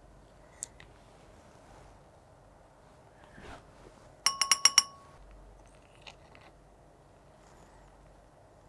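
A small metal spoon rapping quickly on the rim of a glass beaker of water, shaking powder off into it: about six bright, ringing clinks within half a second, about four seconds in. A few faint clicks and light scrapes of the spoon come before and after.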